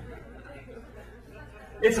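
Stand-up comedy audience murmuring as its laughter dies away, low and even; a man starts talking near the end.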